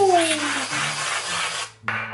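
Aerosol can of whipped cream spraying onto a plate: a sputtering hiss that stops about a second and a half in.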